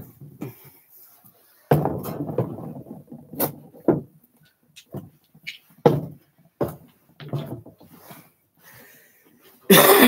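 Handling noise as rocks are picked through out of view: a rustle lasting about two seconds, then a few scattered knocks and fainter rustles.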